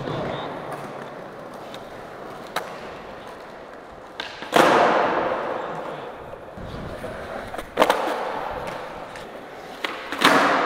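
Skateboard wheels rolling on a smooth concrete floor, broken by sharp clacks of the board striking the floor during flatground tricks. The loudest come about four and a half and eight seconds in, each followed by rolling that fades away.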